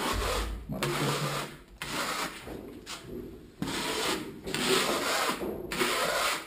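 Plastering trowel scraping decorative plaster onto a wall in a run of about six long strokes, one after another with short gaps, as the final coat goes on.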